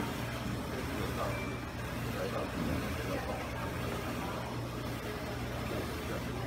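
Indistinct voices talking, faint, over a steady low hum.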